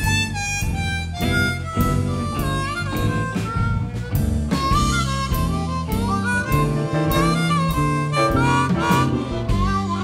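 Blues harmonica solo played into a hand-cupped microphone, its notes bending and wavering, over a band with drums and bass.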